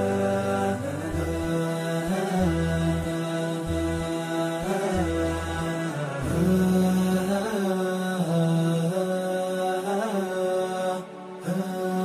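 Chant-like vocal music: a voice holds long, ornamented notes over a low accompaniment that drops out past the middle, with a brief dip in level near the end.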